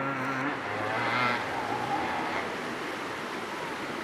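Distant dirt bike engine running under load as it climbs a steep dirt hill, a steady low note that fades after about a second and a half. It sits under a steady rushing noise.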